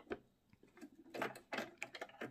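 A few light clicks and knocks of a snap-on sewing machine presser foot, the blind-stitch foot, being unclipped from the presser bar by hand, most of them in the second half.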